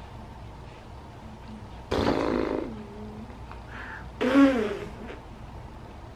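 Two drawn-out wordless groans from a person: one about two seconds in, and a louder one about four seconds in whose pitch bends up and then down.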